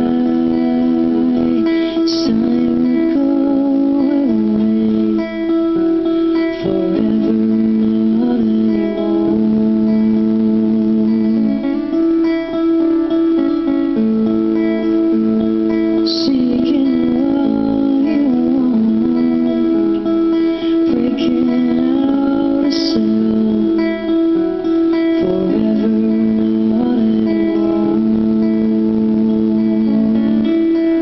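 Live acoustic performance: two acoustic guitars strummed and picked while a woman sings a slow ballad.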